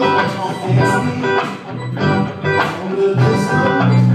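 A live band playing a song, with guitar, a keyboard on an organ sound and a drum kit keeping a steady beat.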